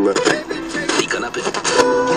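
Music from a radio broadcast, a jingle going into an advert break, with quick percussive hits that settle into held tones near the end.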